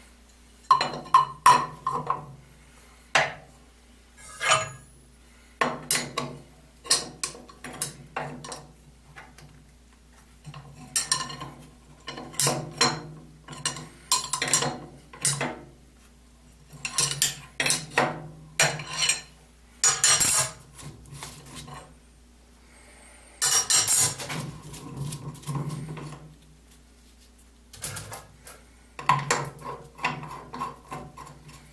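Metal clinks and rattles of a wrench and spindle parts as a sanding drum is fitted and its nut tightened on a spindle sander's spindle, irregular and in short spells with pauses between.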